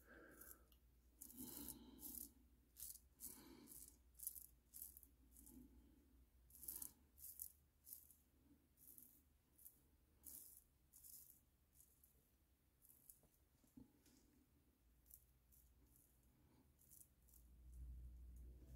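Stirling hyper-aggressive safety razor scraping through lathered stubble: a run of short, crisp strokes about one a second, which thin out after about eleven seconds. This is the audible blade 'feedback' of beard being cut.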